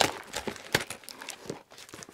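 Scissors working at the packing tape of a cardboard shipping box: a string of irregular short snips and clicks with crinkling of tape and cardboard.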